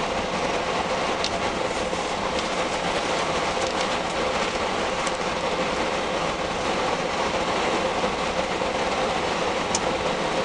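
Steady interior noise of a coach driving at speed on an open road: engine and road noise heard from inside the cabin, with a faint steady tone running through it.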